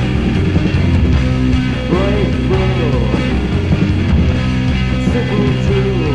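A band playing a rock song, dense and loud throughout, with sliding high pitches over a steady low part.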